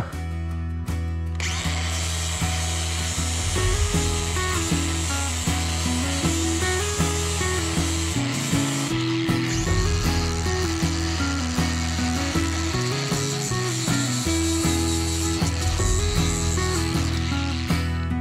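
Bosch brushless angle grinder with an abrasive disc sanding the green paint off a steel hinge, so that it will take black spray paint; from about a second and a half in it grinds steadily against the metal.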